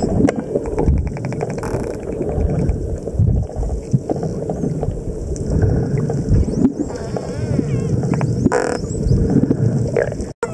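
Wild spinner dolphins heard underwater: a quick train of clicks about a second and a half in, and several faint rising-and-falling whistles in the second half. Underneath runs a steady low rumble of water noise and a constant hum.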